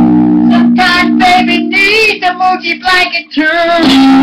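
Electric guitar played loud: a low chord rings through the first half, while a high voice sings short, bending, wordless notes over it.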